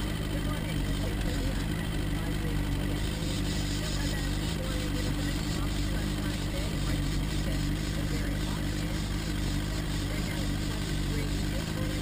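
Small outboard motor running steadily, its even low hum unchanging throughout.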